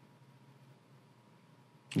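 Near silence: room tone with a faint steady low hum, until a man's voice starts right at the end.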